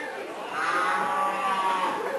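A cow's moo: one long drawn-out call that swells and falls away in pitch.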